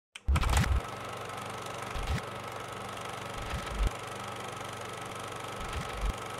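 Sound design for a channel logo intro: a steady low buzzing hum with four deep bass thumps, the loudest at the very start.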